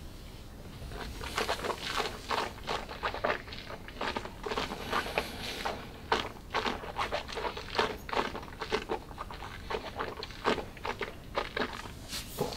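Wet mouth noises of a man working a sip of whisky around his mouth: many short smacks and clicks of lips and tongue, starting about a second in.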